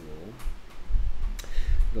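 A man's lecturing voice trails off, followed by about a second of low rumbling with a single click in the middle. His speech starts again at the end.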